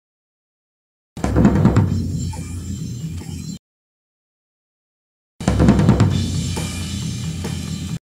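A close-miked floor tom track from a drum kit, with cymbals bleeding into it, played back twice. Each pass lasts about two and a half seconds, opens on a strong drum hit and stops abruptly.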